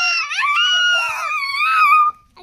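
A child's long, high-pitched wail, held for well over a second and wavering a little in pitch.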